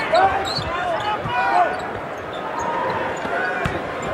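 A basketball being dribbled on a hardwood court, irregular bounces over a steady arena crowd noise, with one sharper bounce near the end.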